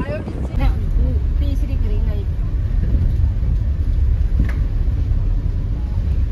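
Interior noise of a moving car: a steady low rumble of engine and tyres heard from inside the cabin, with brief talk in the first two seconds.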